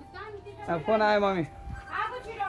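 Voices speaking in two short phrases in the first second or so, the words unclear, with a brief low bump near the end.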